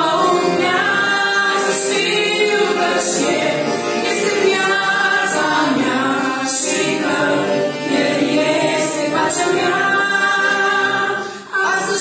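A trio of women singing a Romanian hymn in harmony, with piano accordion accompaniment. The singing breaks off briefly between phrases near the end.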